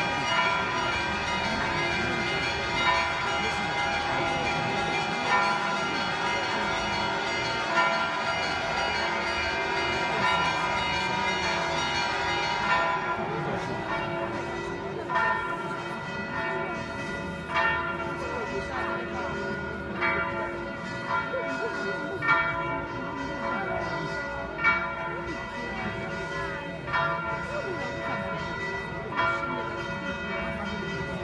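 Church bells ringing in a continuous peal, with a strong stroke about every two and a half seconds over a dense wash of ringing tones. About halfway through the higher ringing thins out and the separate strokes stand out more clearly.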